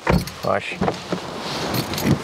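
Car's driver door being opened and a person climbing out: a few short knocks and rustles, then a steady hiss of outside air as the door stands open.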